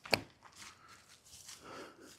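Sneaker steps on an asphalt path during a disc throw: one sharp tap just after the start, then faint scuffs and rustling.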